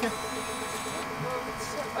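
Electric car switched on and about to pull away, humming: a steady set of electronic tones with a low tone pulsing rapidly and a thin high whine that fades out about a second in.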